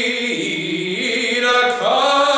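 A man singing with piano accompaniment; his voice steps down in pitch early on and then climbs to a higher held note near the end.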